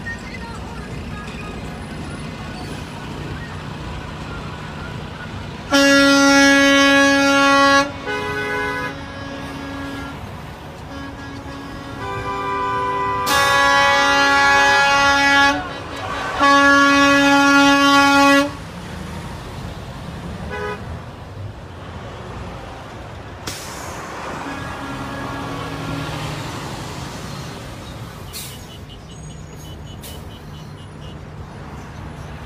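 Rally convoy of semi trucks and cars honking their horns over steady road and engine noise. There are three loud, held blasts of about two seconds each, with quieter horns overlapping between them, all in the first two-thirds.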